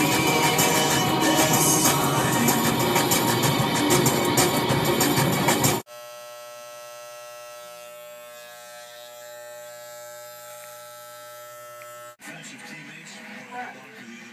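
Loud noise heard from inside a moving car for about the first six seconds. It cuts off suddenly to the steady, even buzz of electric hair clippers running during a haircut, which lasts about six seconds and then stops abruptly.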